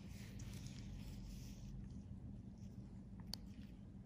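Faint room noise with a steady low hum, a soft rustling hiss for the first second and a half, and a single sharp click a little past three seconds in.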